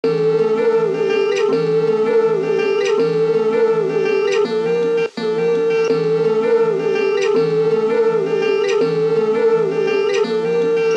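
Background music: a plucked-string instrument plays a repeating pattern over a sustained tone, with a brief break about five seconds in.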